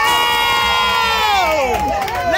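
A few women cheering together in one long, held shout that slides down in pitch near the end.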